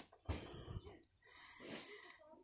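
Faint breathing close to the microphone, with a soft low thump about a quarter of a second in.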